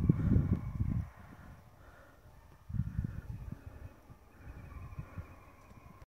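Low rumbling buffeting on the phone microphone, in bursts of about a second near the start and again around three seconds in, over the faint, distant baying of black and tan coonhounds running a coyote.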